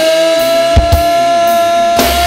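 Live band music in an instrumental passage: one long steady held note over the drum kit, with the low bass dropped out and a pair of sharp drum hits a little under a second in.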